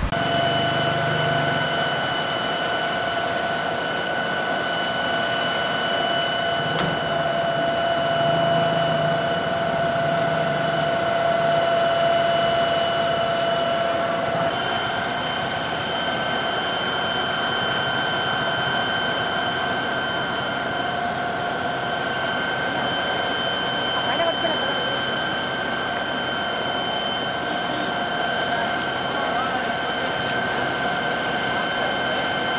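Fire engine's water pump running steadily while feeding a hose, a steady rushing noise with a high whine that shifts slightly in pitch about halfway through.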